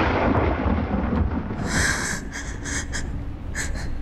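A deep rumble like thunder fades away, and over it a woman takes several sharp, heavy gasping breaths as she wakes with a start.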